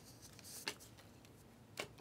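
Trading cards being handled, a stack of Panini Select cards flipped through by hand, with a few faint, short snaps as cards slide off the stack.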